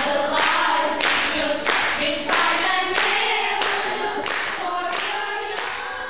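Children's choir singing together, high voices in short rhythmic phrases.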